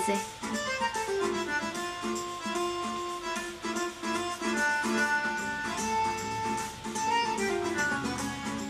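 Instrumental background music: a melody of short and held pitched notes.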